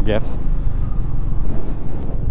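Motorcycle engine running steadily at cruising speed, with a fast low pulsing, mixed with wind and road noise on the helmet or handlebar microphone.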